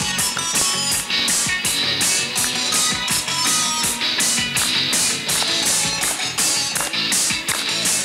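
Live rock band playing a song led by electric guitar, with a steady beat.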